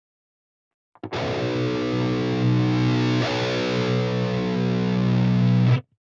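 High-gain distorted electric guitar through a modelled Mesa Boogie Mark IV lead channel, with the Mesa Boogie Five-Band Graphic EQ pedal engaged in place of the amp's own 5-band EQ. A low chord starts about a second in, sustains for almost five seconds and is muted suddenly near the end.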